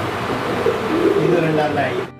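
Fantail pigeons cooing in the loft, several low coos overlapping one another.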